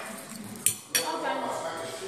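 Two sharp clinks of tableware, about a third of a second apart, as a toddler handles his plate at the table.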